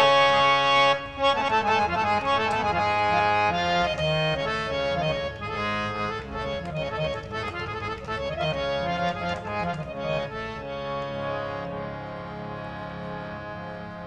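Harmonium playing the slow melodic introduction to a ghazal in raga Bhoopkali, held reed notes moving stepwise, growing softer toward the end.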